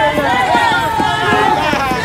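Several people's voices at once, loud and unbroken, overlapping one another.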